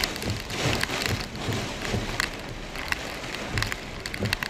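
Heavy wind-driven rain pelting the vehicle's roof and windshield during a severe thunderstorm with straight-line winds, a dense rush with many sharp spatters, heard from inside the car.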